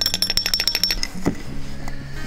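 Aluminum powder poured from a cup onto magnetite sand in a glass jar: a rapid fine patter of grains that stops about a second in. Background music plays throughout.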